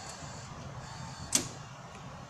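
Steady low background hum of a station concourse, with a single sharp click about halfway through.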